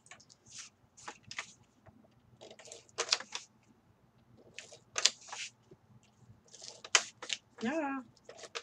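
Paper being handled and shifted on a cutting mat: short rustling, scraping bursts with a few sharp clicks, the sharpest about three, five and seven seconds in.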